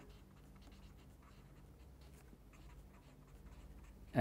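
Faint scratching of a marker pen on paper as block letters are written, over a low steady hum.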